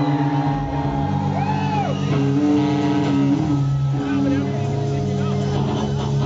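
Live rock band holding a sustained, droning chord with electric guitar, with whoops and cheers from the crowd over it.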